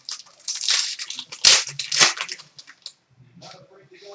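Trading-card pack wrapper being torn open and crinkled by hand: a run of short, scratchy rips and rustles.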